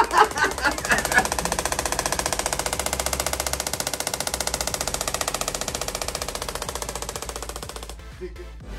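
Radial shockwave therapy applicator (Storz Medical) firing a rapid, even train of sharp clicking pulses that grows slightly fainter and stops just before the end.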